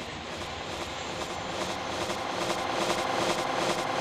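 Jet airliner flying overhead, its engine noise swelling steadily louder.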